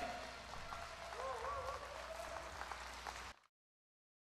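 Faint audience applause in a concert hall as the band's last chord dies away, with a faint voice over it; the sound cuts off abruptly near the end.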